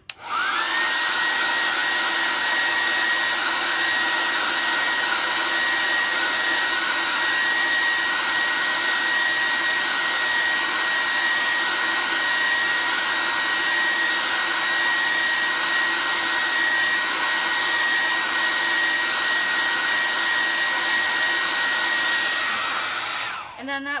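Handheld hair dryer blowing hot air onto screen-printed ink on a cloth towel to heat-set it: a steady rush of air with a steady high whine. It is switched on at the start, its whine rising briefly as it spins up, and switched off shortly before the end.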